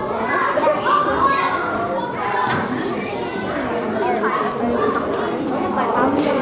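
Many young children chattering and calling out at once, their voices overlapping in a large hall.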